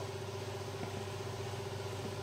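Steady machine hum from workshop equipment, holding one constant tone over a low drone, with a faint click a little under a second in.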